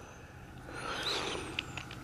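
Faint outdoor background noise with a low steady hum, a faint high chirp about a second in, and two small clicks near the end.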